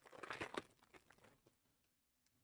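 Crinkling of a Panini Prizm trading-card pack wrapper being handled and opened: a brief burst of crackling for about a second and a half, loudest about half a second in.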